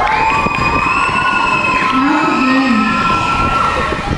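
Audience cheering and shouting, with long, high-pitched held cries.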